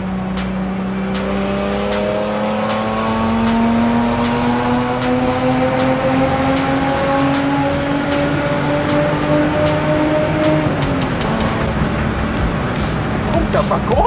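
BMW 635 CSi's straight-six engine with an open exhaust, heard from inside the cabin, pulling hard under acceleration. Its pitch climbs slowly for about ten seconds in one long pull, then falls back at a gear change and holds steady.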